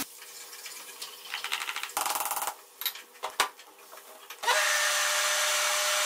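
Electric blender motor running steadily from about four and a half seconds in, mixing an egg into creamed ghee and sugar. Before it come a short burst of noise about two seconds in and a few sharp clicks.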